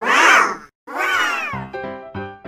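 Two cat meows, one after the other, the second longer and falling away at the end, then a quick run of short musical notes starting about one and a half seconds in.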